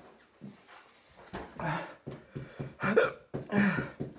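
A man's voiced gasps and rapid, pulsing breaths as he suffers the burn of a Trinidad Butch T Scorpion chilli. There are a few sharp, loud gasps in the second half, and a quick run of about five breath pulses a second builds toward the end.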